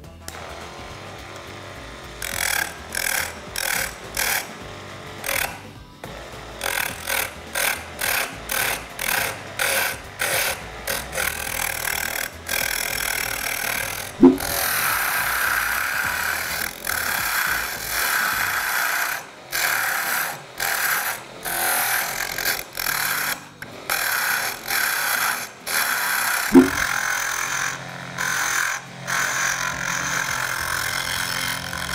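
A hand-held shaper pen scraping a small wooden cylinder spinning on a tiny hobby lathe (BenKit lathe module), shaping it in short repeated cuts about once or twice a second. The cuts start about two seconds in, with a longer unbroken cut around the middle.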